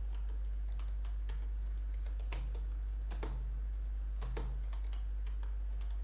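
Irregular light clicking of a computer keyboard and mouse, with three louder clicks about two, three and four seconds in, over a steady low hum.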